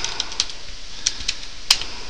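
Computer keyboard being typed on: a quick run of separate key clicks as a short word is entered.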